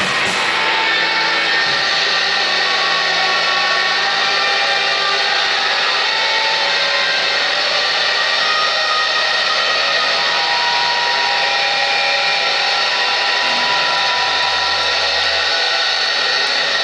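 Loud, steady drone of electric guitar feedback and amplifier noise, several held high tones over a wash of noise, with the drums stopped right at the start.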